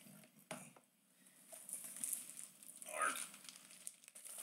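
Quiet handling of cardboard card boxes and packaging: a light knock about half a second in, then faint rustling.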